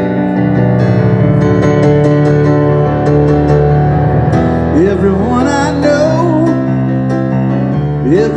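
Keyboard playing sustained chords in a live song, with a man's voice starting to sing over it about halfway through.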